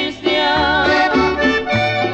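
Instrumental passage of a norteño song: accordion playing the melody over a bass line that steps about twice a second.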